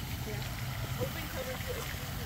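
Handheld sparkler fizzing with a steady hiss, with faint voices of people close by.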